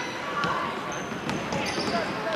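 Basketball being dribbled on a hardwood gym floor during play, a few sharp knocks over the hall's din, with short high squeaks and spectators' voices around it.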